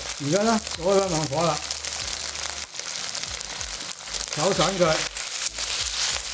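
Chicken pieces sizzling in hot oil in a wok over a gas burner on high heat, with the light scrape and clatter of a spatula and chopsticks stirring them.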